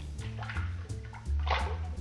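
Background music, with a short splash of dry gin tipped from a jigger into a glass mixing glass about one and a half seconds in.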